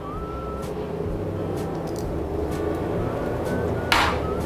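Steady low background hum with a few faint utensil clicks, then a sharp click near the end as a small vanilla bottle is set down on the kitchen counter.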